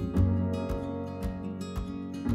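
Instrumental background music: strummed acoustic guitar over a steady beat.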